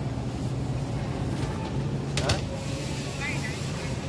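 Grocery store background: a steady low hum with faint, indistinct voices, and one sharp clack a little past two seconds in.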